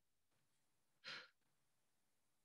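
Near silence, with one short, soft breath from the teacher about a second in.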